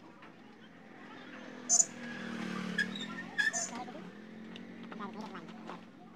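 A motor vehicle's engine passing by, swelling over about a second, holding, then fading, with two short sharp high-pitched bursts near the middle.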